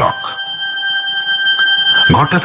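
Background music drone of a radio drama: a few steady, held tones over a faint hiss, one of them dropping out near the end.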